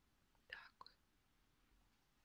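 Near silence: room tone, with a faint brief rustle about half a second in and a soft click just after.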